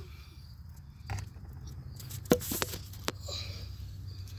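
Handling noise from a smartphone being moved and set in place: a few knocks and clicks, the loudest just past halfway, over a low steady hum.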